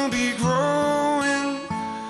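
A man singing a held, sustained line over a strummed acoustic guitar, with the strumming fading a little near the end.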